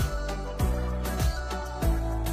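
Background music with a steady beat: a low drum hit about every two-thirds of a second over a held bass and sustained melody tones.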